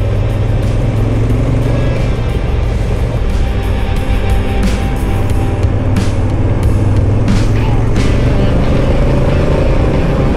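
A twin-cylinder adventure motorcycle's engine running steadily while riding a gravel road, with wind noise over the microphone and a few short clicks of gravel about halfway through. Music plays over it.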